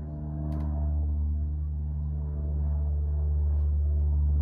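Steady low drone of several held tones, getting a little louder about a second in.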